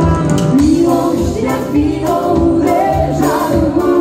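Live band playing a dance medley: a singer's vocal line over electronic keyboard and a drum kit with a steady beat. It is loud and recorded on a phone.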